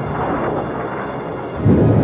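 Rocket engine noise of a rocket in flight: a steady, pitchless rumble that grows louder and deeper near the end.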